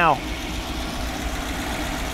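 Small-block Chevy V8 demonstration engine idling steadily, a low even rumble.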